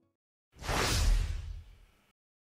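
A whoosh transition sound effect: a single rushing swell that comes in about half a second in, with a deep rumble underneath, and fades out over about a second.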